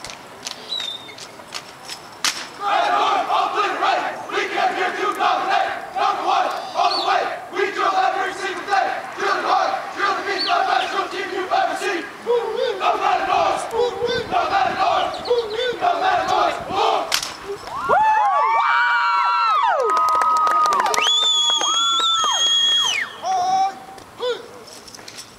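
An armed drill team chanting and shouting in unison in a steady rhythm, then near the end letting out long drawn-out yells that rise and fall in pitch; sharp slaps of rifle handling break through now and then.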